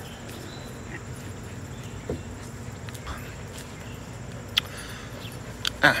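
Quiet sipping of beer from a glass, then a short knock about four and a half seconds in as the glass is set down on a wooden table, followed by an exhaled "ah". Behind it runs a steady outdoor background with a faint, high insect trill.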